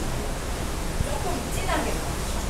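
Steady rushing wind and sea noise on an open ship deck, with one soft knock about halfway through.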